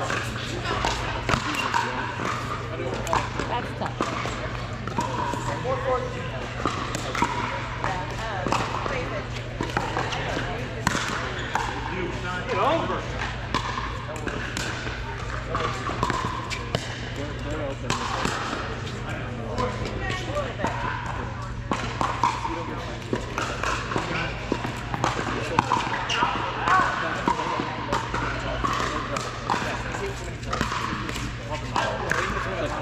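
Pickleball paddles striking a hard plastic ball: sharp pops coming every second or so, overlapping from several courts. Behind them are background voices and a steady low hum.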